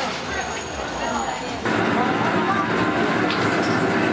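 Quiet shop ambience, then about halfway through a sudden switch to the louder, steady roar of a commercial kitchen stove under a large steaming pot, with a few sharp clicks and knocks.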